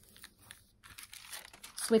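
Parchment paper rectangles being handled, crinkling faintly with scattered light ticks.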